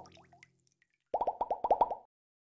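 Popping sound effect of an animated subscribe-button outro. After a fading tail and about a second of near silence, it plays a quick run of about nine short, pitched blips, each with a fast pitch glide.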